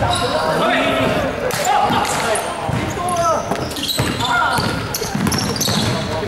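Basketball bouncing on a hardwood gym court during play, with players calling out, all echoing around a large sports hall.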